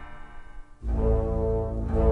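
Music: one passage fades away, and after a brief near-silent gap a new piece enters a little under a second in, with a low, sustained chord.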